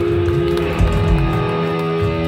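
Electric guitars ringing with held, sustained notes through the amps. Two short low thumps come about a second in.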